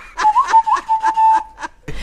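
A person whistling a steady held note that breaks off and starts again a few times, under short breathy bursts of snickering laughter.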